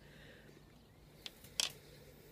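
Quiet room with a low steady hum and two light clicks, one faint and one sharper, about a second and a half in, as the idle cordless drill is moved into place.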